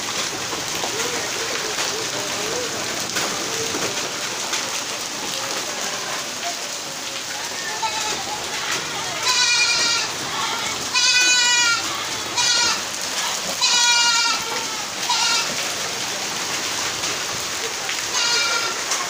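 Heavy rain mixed with hail falling on concrete: a steady hiss. A little past the middle come several short, high, wavering calls, the loudest sounds here.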